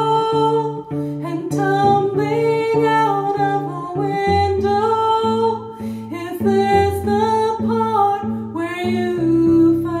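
A woman singing a slow melody over her own cello accompaniment, the cello plucked in a steady pattern of low notes.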